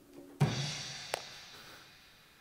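A theatrical percussion crash: a sudden deep drum boom with a ringing high wash that fades away over about a second and a half, with one sharp tick in the middle. It is the stage effect for the sudden crash of the Cyclops's arrival.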